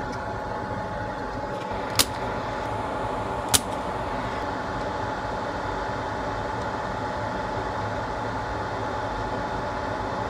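Steady fan-like hum with a thin steady whine, broken by two sharp clicks about two and three and a half seconds in.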